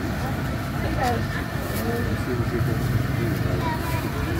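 Busy street-market background: a steady low rumble with scattered voices over it.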